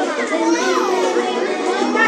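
Many children's voices chattering and calling out over one another, excited and overlapping.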